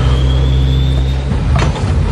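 Deep, steady machine hum from a prison transport truck, with a faint whine rising slowly in pitch over the first second and a knock about one and a half seconds in.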